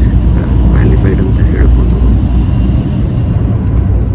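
Steady low rumble of a Tobu Spacia limited-express train running, heard from inside the passenger cabin. A man's voice is heard briefly in the first half.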